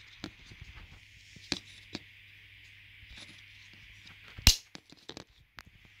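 A plastic reflector snapping into a scooter's plastic rear cover: a few light plastic clicks from handling, then one sharp snap about four and a half seconds in as it locks under the lip.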